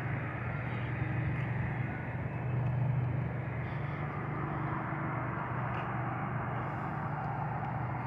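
Steady outdoor city ambience: a continuous low hum and rush, typical of distant traffic.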